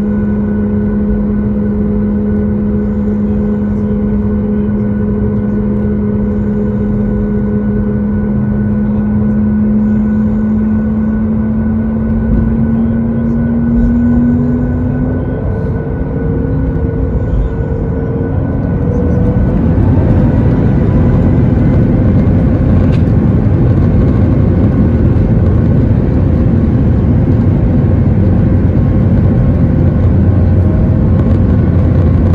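Boeing 737-8 MAX's CFM LEAP-1B engines heard from the cabin beside the wing. They give a steady idle hum with a constant drone while taxiing. From about halfway through, the pitch rises as the engines spool up, then the sound swells into a louder, steady rumble as takeoff thrust is set for the takeoff roll.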